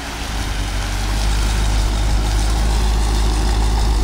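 Jeep Grand Cherokee Trackhawk's supercharged 6.2-litre Hemi V8 idling steadily with a low rumble as the SUV rolls up toward the starting line.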